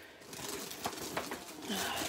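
Rustling and crinkling of a stiff diamond-painting canvas and its plastic wrapping as they are lifted and folded back, with scattered small handling clicks. A short murmur of a voice near the end.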